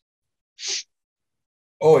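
A short breathy sound from a person, about a third of a second long and under a second in, between stretches of dead silence on the call audio. A man's voice begins right at the end.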